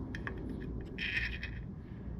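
A steel screwdriver tip knocking and scraping against metal inside the open primary chaincase by the clutch pressure plate: a few light clicks, then a short metallic scrape about a second in.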